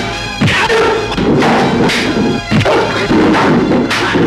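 Several punch sound effects, sharp thuds and smacks, landing every second or so in a film fistfight, over a continuous dramatic background score.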